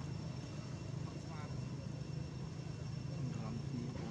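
Faint, unintelligible human voices over a steady low rumble, with a short high wavering call about a second and a half in.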